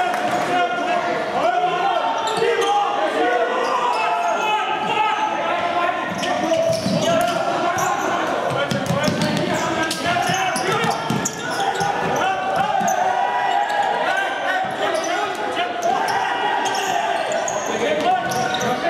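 Indoor futsal match: shouting voices echo through the hall, with the thuds of the ball being kicked and bouncing on the wooden court.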